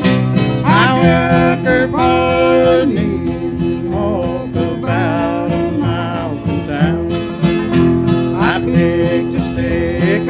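Bluegrass band playing live: acoustic guitars and banjo over upright bass, with sustained sung notes.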